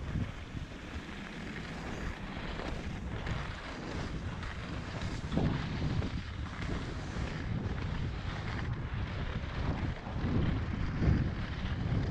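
Wind rushing over the microphone of a camera worn by a skier heading down a groomed run, with the scrape of skis on packed snow underneath. The rushing swells a little at times.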